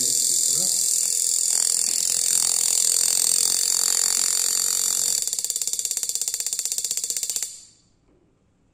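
High-voltage spark discharge from a homemade lightning simulator, a transformer stepping a few volts up to kilovolts, arcing between its electrodes. It makes a loud, harsh, rapid buzzing crackle that cuts off suddenly about a second before the end.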